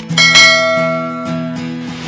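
Outro background music with guitar; just after it starts, a bright bell chime sound effect rings out and fades over about a second and a half.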